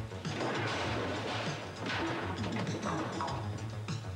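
Tense drama soundtrack music with a steady low drone, overlaid by repeated crashing and clattering noises.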